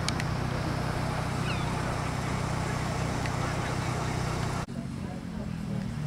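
A classic car's engine idling steadily. About three-quarters of the way through it cuts off abruptly, leaving a quieter, uneven low rumble, with faint voices throughout.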